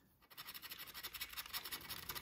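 A plastic scratcher tool scraping the coating off an instant lottery scratch-off ticket in quick, rapid strokes. It is faint, and it starts about a third of a second in.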